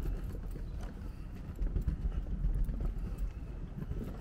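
Footsteps on a wooden boardwalk, an irregular run of knocks and clicks over a low rumble.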